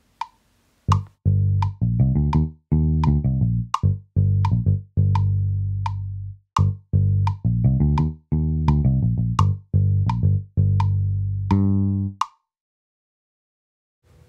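GarageBand's 'Liverpool' virtual bass, a Höfner-style violin-bass sound, playing an improvised bass line recorded live on an iPad over a metronome click at 85 beats per minute. The click starts alone, the bass comes in about a second in, and both stop about a second and a half before the end.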